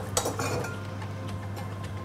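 Metal cookware clinking at the pan of rice: a short cluster of knocks about a quarter second in, one ringing briefly, over a steady low hum.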